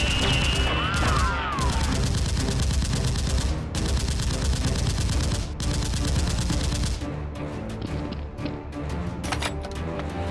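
Rapid bursts of automatic gunfire sound effects over a background music track; the firing thins out about seven seconds in.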